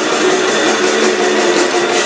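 A death metal band playing live, with heavily distorted electric guitars. The sound is loud and dense, with little deep bass.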